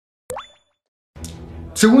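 A short rising 'bloop' sound effect about a third of a second in, fading within a fraction of a second. Soft background music comes in just past one second, and a man starts talking at the very end.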